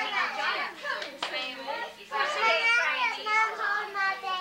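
Children's and adults' voices talking, with a single sharp click about a second in.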